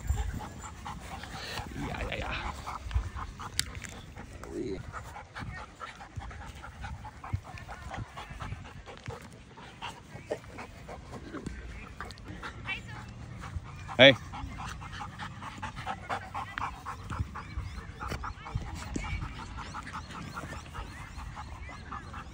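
Staffordshire bull terrier puppy and a larger dog play-wrestling on grass: irregular scuffling and breathing, with the odd short dog vocal sound.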